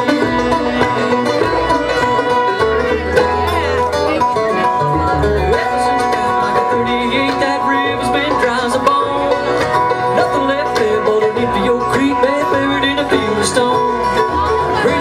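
Live bluegrass band playing an instrumental passage: mandolin, acoustic guitar and upright bass, with banjo, plucked at a steady driving tempo.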